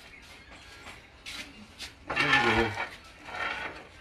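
A few light knocks and rustles, then a drawn-out pitched vocal call about two seconds in, and a softer one about a second later.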